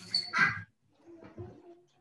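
A child's voice through a video-call connection: a short indistinct sound at the start, then fainter murmuring about a second in.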